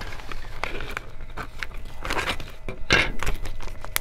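Clear plastic zip-top bag crinkling and rustling as it is handled and pulled open, in irregular bursts that are loudest about two and three seconds in.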